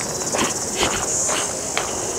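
Steady high-pitched insect chorus with a fine rapid pulse, over footsteps on a gravel track about twice a second.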